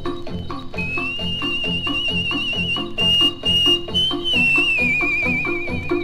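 Instrumental break of a 1950s Italian popular-song orchestra recording: a steady, bouncy rhythmic accompaniment with a high whistle-like melody line over it, entering about a second in, held with a quick trill and stepping down in pitch near the end.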